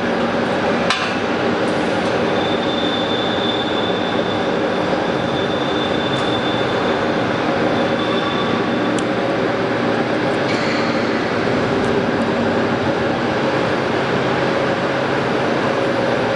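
Hydraulic press brake's pump motor running with a steady hum, a sharp click about a second in and a few lighter clicks later.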